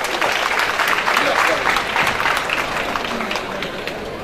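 Audience applauding: a dense, steady clatter of many hands clapping.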